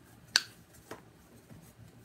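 A single sharp click about a third of a second in, followed by a much fainter tick about half a second later.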